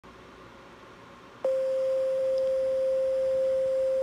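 Faint hiss, then a steady pure tone that starts suddenly with a click about a second and a half in and holds at one unchanging pitch.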